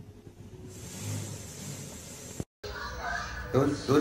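Faint hiss with a low hum, broken by a moment of dead silence about two and a half seconds in, then a person talking in the last second or so.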